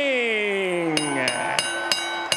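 A boxing ring bell struck four times in quick succession, about three strikes a second, each strike ringing on. Under the first strikes a man's amplified voice trails off, drawing out a word with falling pitch.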